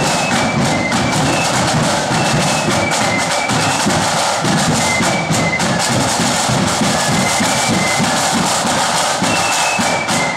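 Marching flute band playing: a high flute melody over steady snare and bass drum beating.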